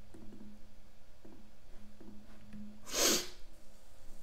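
A man's short, sharp burst of breath through the nose, a sneeze or snort, about three seconds in. It sounds over faint clicks and a low steady hum.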